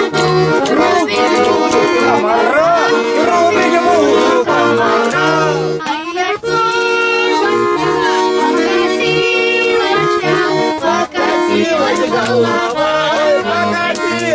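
Button accordion playing a folk tune: held chords over a steady run of short bass notes.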